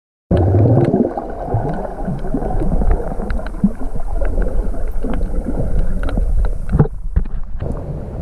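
Underwater sound picked up by a camera submerged while snorkelling: a loud, muffled rumble of moving water with scattered sharp clicks and crackles. It starts abruptly a fraction of a second in.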